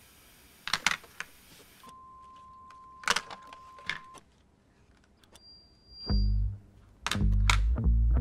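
Television static hiss that cuts off about two seconds in, followed by a steady electronic tone for about two seconds, a few sharp clicks and a brief high beep. Loud bass-heavy music comes in near the end.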